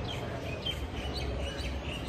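Small birds chirping in short, high, repeated calls over a steady low background rumble.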